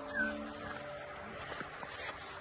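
A young German shepherd gives a short, high, rising whine near the start.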